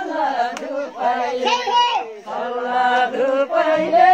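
Several people singing together in a chant-like folk melody, with long, wavering held notes.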